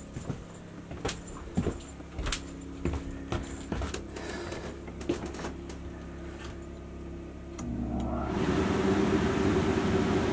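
Scattered clicks and knocks over a low hum, then about eight seconds in the Coleman Mach 3+ rooftop air conditioner's blower fan starts and runs steadily with a rush of air. Only the fan is on; the compressor has not yet started.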